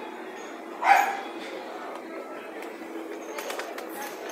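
A single short, loud call about a second in, over a steady low background hum.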